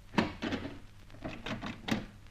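Door sound effect in a radio drama: a wooden door being opened, heard as a series of short knocks and clicks over about two seconds, the last one the loudest.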